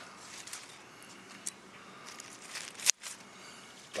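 Faint rustling of lettuce leaves being handled and picked by hand, with a few small ticks and one sharp click about three seconds in.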